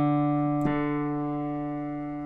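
A D note on a digital stage piano, held and slowly fading, with a second attack about two-thirds of a second in. It is the reference pitch for tuning the guitar's D string.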